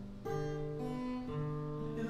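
Acoustic guitar playing a short run of ringing chords with no voice, the chord changing about every half second.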